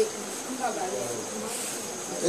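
A few faint spoken sounds over a steady high-pitched whine that runs underneath throughout.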